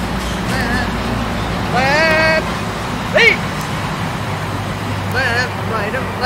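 Sheep bleating as the flock follows the treat bucket: short wavering calls recur, with a longer, rising bleat about two seconds in, over a steady low rumble.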